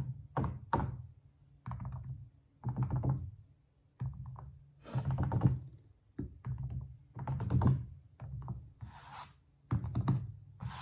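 Fingertips dabbing and pressing paint onto a stretched canvas, a series of irregular dull thunks from the canvas, with a few brushing strokes mixed in.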